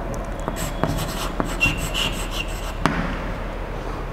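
Chalk writing on a blackboard: scratching strokes broken by sharp taps of the chalk against the board, with a brief high squeak about halfway through.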